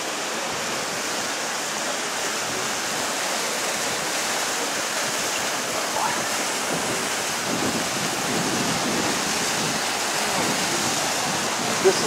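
River water rushing over boulders and small falls: a steady, even wash of water sound.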